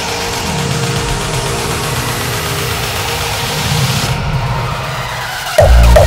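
Hardstyle build-up: a rising noise sweep over low synth bass notes, which cuts off about four seconds in. Near the end the drop hits suddenly, with loud, heavily distorted hardstyle kick drums at a steady beat.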